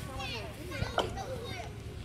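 Children's voices and shouts in the background, with one sharp chop of a blade biting into a wooden log about a second in.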